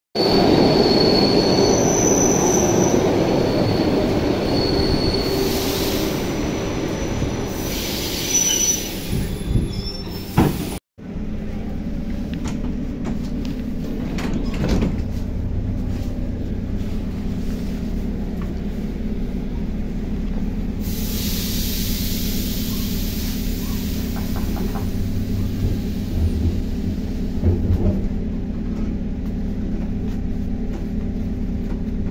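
ER2R electric multiple unit running alongside a platform, wheels rumbling with high-pitched squeals. After a sudden cut, a steady low hum of the standing train's machinery is heard from inside the car, with a hiss from about two-thirds of the way through lasting a few seconds, and a few light clicks.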